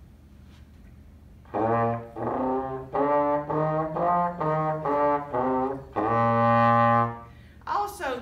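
Trombone playing a short run of eight detached notes that climb and come back down, then one long held low note.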